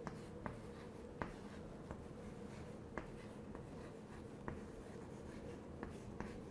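Chalk writing on a chalkboard, faint, with about seven short sharp taps at irregular intervals as the chalk strikes the board for each stroke.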